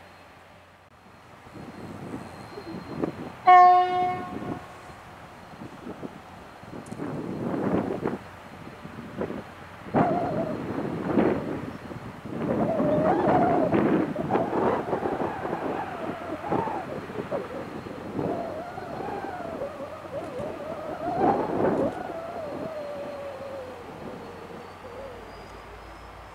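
Diesel locomotives on a coal train give a short horn blast about three and a half seconds in. Their engines then run with a wavering pitch that rises and falls as the train gets moving, fading a little near the end.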